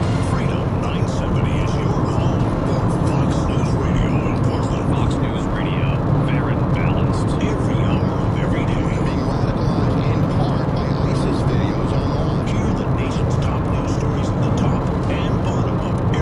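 Car radio playing a voice over music, heard inside the moving car over the steady drone of road and engine noise.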